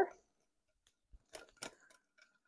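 A few faint clicks and scrapes from a utensil stirring thick batter in a glass mixing bowl, starting about a second in.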